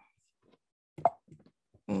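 Dead silence on a video-call line, broken about a second in by a single short, sharp pop, with a brief murmured "mm" at the end.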